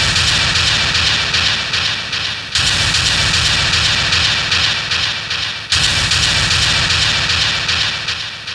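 A loud, rushing dramatic sound effect from the show's soundtrack over a low rumble, struck anew three times about three seconds apart, each time starting suddenly and fading a little.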